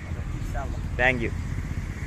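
A man's voice, a short spoken sound about a second in, over a steady low rumble.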